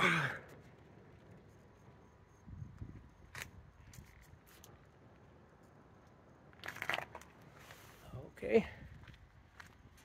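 Mostly quiet, with a few faint knocks and rustles of handling and movement, and a short vocal murmur about eight and a half seconds in.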